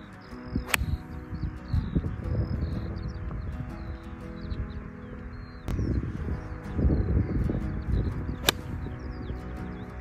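Two sharp strikes of a golf club on the ball, about a second in and again near the end, under background music, with birds chirping faintly.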